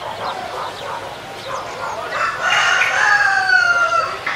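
A loud animal call about two seconds long, slowly falling in pitch, starting about halfway through, after fainter scattered short calls.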